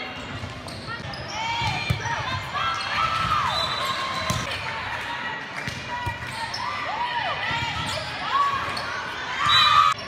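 Chatter and calls of players and spectators echoing in a gymnasium, with a few sharp thuds of a volleyball.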